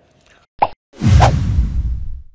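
A short plop-like sound effect, then about a second in a louder, deep sound effect that swells and fades away over about a second: an edited transition sting into the closing title card.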